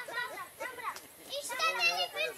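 A young child's high-pitched voice: several short utterances with a brief pause about a second in, louder near the end.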